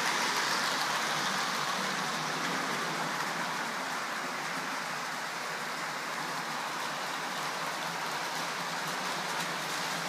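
Model trains running on the layout's track: a steady, even rushing noise of wheels rolling on the rails as a multiple unit and a diesel-hauled freight train of wagons pass, a little louder at first.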